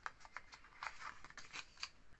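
Faint rustling and light ticks of a paper perfume sample card and a small glass sample vial being handled, with a scatter of short clicks throughout.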